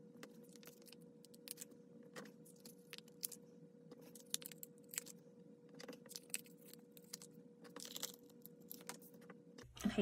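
Faint, irregular crinkles and clicks of planner stickers being peeled from a glossy sticker sheet with tweezers and pressed onto paper pages, over a faint steady hum.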